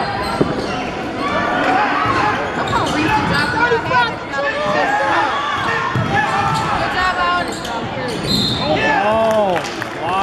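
Gymnasium basketball game sound: many indistinct voices of players and spectators calling and shouting in a large, echoing hall, with a basketball bouncing on the hardwood court. There is a sharp knock just under half a second in, and a louder shout near the end.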